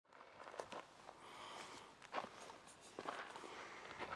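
Faint footsteps of a person walking: a few soft, irregular steps.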